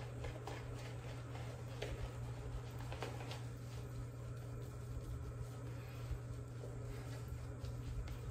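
OKU Bilbao shaving brush working soap lather: faint soft scrubbing with a few light clicks, over a steady low hum.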